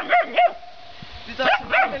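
A dog barking: three quick barks at the start, then a pause and a few more barks about a second and a half in.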